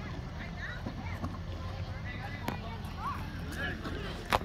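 Faint voices of people talking at a distance, over a steady low rumble, with a single sharp click about two and a half seconds in.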